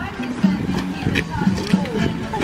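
Christmas tree dragged through a metal funnel netting machine, its branches rustling and scraping with a dense crackle. Background music plays underneath.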